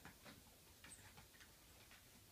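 Near silence with a few faint, scattered ticks and taps.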